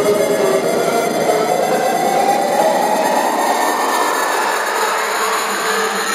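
Progressive psytrance breakdown with the kick and bass dropped out: a noisy synth sweep rises steadily in pitch throughout, building tension.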